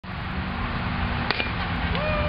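A single sharp crack of a softball bat hitting the ball a little past halfway, over a steady outdoor rumble; a held shout begins right at the end.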